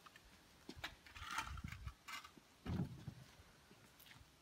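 Faint wooden knocks and a brief scrape as a large plywood-and-2x4 A-frame crate is tilted back on a concrete floor, with a heavier thump a little before the end as it settles.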